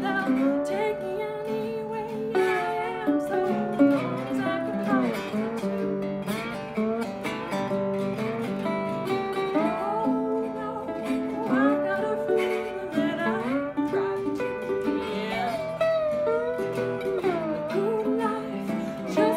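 A woman singing, accompanied by two guitars: a metal-bodied resonator guitar and an archtop acoustic guitar, played together without a break.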